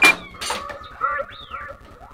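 R2-D2 droid replica chirping and whistling: a sharp blip at the start, then a warbling whistle that arcs up and back down, and a rising whistle near the end.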